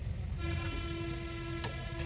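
A horn sounding one long, steady note for nearly two seconds, starting about half a second in, over a low rumble, with a single sharp click near the end.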